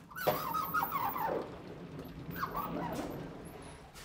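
Counterweighted sliding chalkboard panels pushed along their frame: a rolling rumble with wavering squeals from the runners. The squeals come in two stretches, the second about two and a half seconds in, and the sound fades out near the end.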